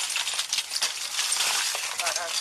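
Broken window glass clinking and rattling as shards are knocked from the frame and fall: a dense run of small, bright clinks.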